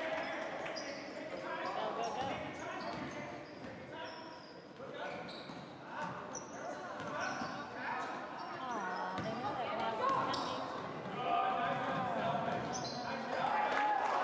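Basketball dribbled and bouncing on a hardwood gym floor during game play, with players and spectators calling out.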